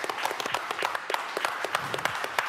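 A few people clapping their hands in a quick, uneven round of applause.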